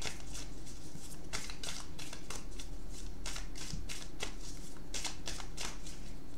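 A tarot deck being shuffled by hand: a quick, irregular run of soft card clicks and flutters.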